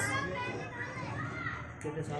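Children's voices chattering indistinctly in the background, well below the level of the interview speech.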